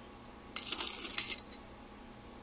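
Metal tablespoon working in granulated sugar: a short gritty scrape with a few light clinks, starting about half a second in and lasting under a second.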